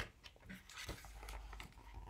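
Faint rustling and scattered light clicks of a picture book's paper page being turned and handled, with one sharper click about halfway through.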